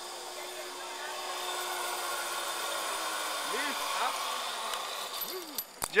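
Zip-line pulley trolley whirring along a steel cable: a steady hiss with a faint hum that swells over the first few seconds and fades near the end.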